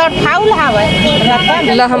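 Women talking over one another, with a steady high-pitched tone lasting about a second in the middle.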